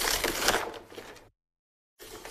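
Crinkling and rustling of a clear plastic stamp packet and sheet of clear stamps being handled, loudest at first and fading out about a second and a half in.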